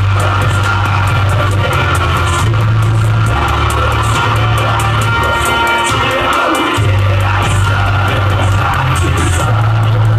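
Live electronic trap beat played loud through a club PA, with heavy sustained bass notes and fast hi-hats, and a man rapping over it into a microphone. The bass drops out briefly about six seconds in, then comes back.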